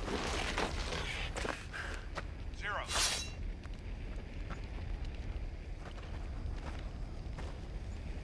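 Film sound of a man breathing hard and grunting over the steady low rumble of a burning helicopter wreck, with a sharp hiss about three seconds in, then scattered footsteps on gravel.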